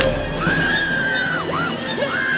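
A woman's high-pitched screams over an orchestral film score: one long scream starting about half a second in, then a short one.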